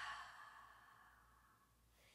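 A woman's long, audible exhale through the mouth, a breathy sigh that fades out over about the first second, followed by near silence.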